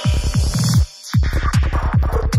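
Dark psytrance with a fast rolling kick and bassline; about a second in the whole track cuts out for a moment, then the beat drops back in with a high synth line over it.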